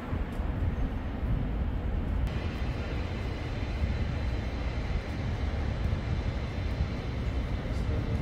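Steady low rumble of city street noise: traffic and engine drone with no clear single source. A higher hiss joins about two seconds in.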